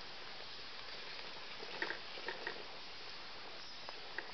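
A radio-controlled rock crawler's tyres and chassis crawling over loose stones and twigs, giving a few small clicks and knocks about two seconds in over a steady faint hiss.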